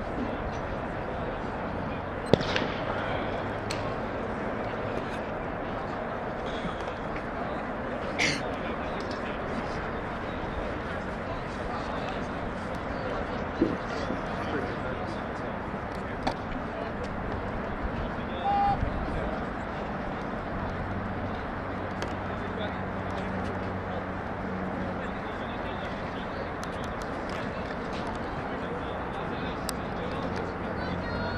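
Outdoor athletics-track ambience with voices in the background and a steady noise haze; a single sharp crack about two seconds in, the starting gun for a distance race.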